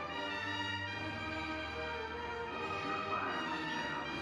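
Symphony orchestra playing slow, sustained music, with brass and strings holding long chords.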